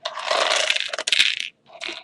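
Loose LEGO pieces rattling and scraping inside a small metal tin as it is tipped out toward a hand. The rattle lasts about a second and a half, stops, then comes again briefly near the end.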